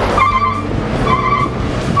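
Pickup truck engine and road noise heard from the open truck bed while riding, steady, with wind on the microphone. A short high flat tone sounds twice over it.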